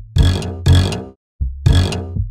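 A hip-hop beat playing back from a music production program: three loud, chopped sample stabs, each about half a second long, over a sub-bass note and drum-machine hits.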